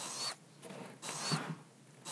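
Cordless drill spinning a pocket-hole bit into pine through a Kreg K4 jig, in two short rasping bursts, one at the start and one about a second in, each with a faint rising motor whine.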